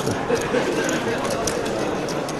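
Busy poker room ambience: a murmur of many voices with scattered sharp clicks, typical of poker chips being handled and stacked at the tables.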